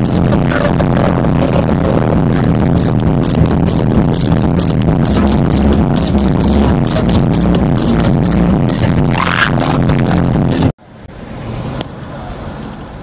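Loud electronic dance music with a steady, even beat, played over a festival sound system. It cuts off abruptly near the end and gives way to a much quieter steady noise.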